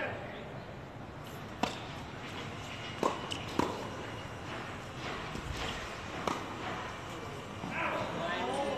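Tennis ball hit by rackets and bouncing on a hard court during a rally: five sharp pops spread unevenly over about five seconds.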